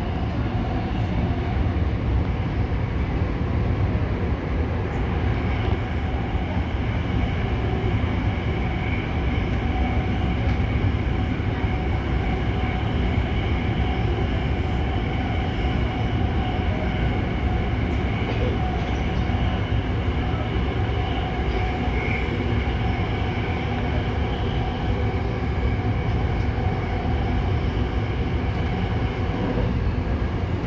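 Tokyo Metro Namboku Line subway train running at steady speed through the tunnel, heard from inside the passenger car: a constant low rumble of the running gear on the rails, with faint steady high tones above it.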